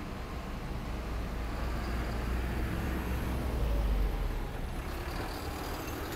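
Ocean surf breaking on a sandy beach: a steady wash of noise with a deep rumble that swells about three to four seconds in.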